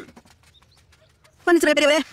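Near quiet for over a second, then about a second and a half in a high-pitched cartoon character's voice cries out.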